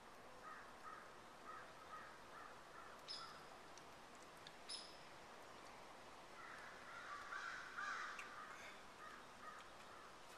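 Faint birds calling against near silence: a run of short calls in the first few seconds, two brief high chirps around the middle, and a louder bout of calls in the later half.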